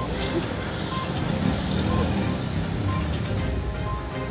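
Street ambience of traffic, with indistinct voices in the background. A faint short beep recurs about once a second.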